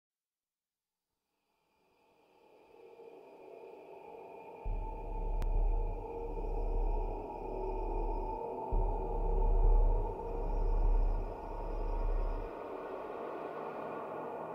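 Dark ambient film-score drone fading in after a silent start, joined about five seconds in by deep bass swells that rise and fall several times and stop near the end, leaving the held drone.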